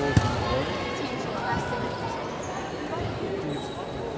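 Indistinct chatter of players and spectators on a basketball court, with a few low thumps, the loudest just after the start.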